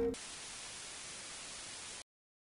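Steady static hiss, a TV-noise transition sound effect, which cuts off suddenly at the end. A last note of the guitar background music rings briefly at the very start.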